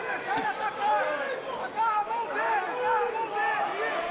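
Arena crowd shouting and cheering, many voices overlapping.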